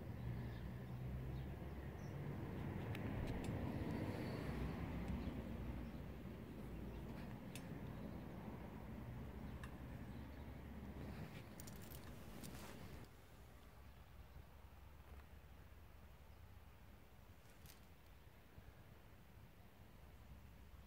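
Stainless-steel wood-gas backpacking stove burning wood pellets, gasifying: a steady low rushing of flame with a few faint clicks, a cluster of them about twelve seconds in, after which the rushing drops quieter.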